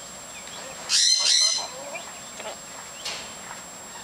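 Duyvenbode's lory calling: one loud, harsh call about a second in, lasting half a second, then two shorter, softer chattering calls.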